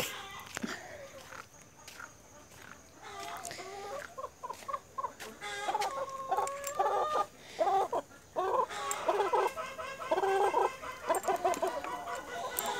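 Backyard chickens clucking: a run of short calls that starts a few seconds in and grows louder and busier toward the end.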